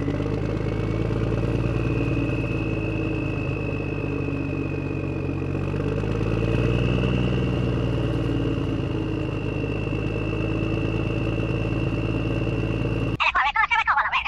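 Miniature DIY tractor's motor running steadily as it pulls the seeder through sand: a low hum with a thin, steady high whine over it. It cuts off suddenly near the end.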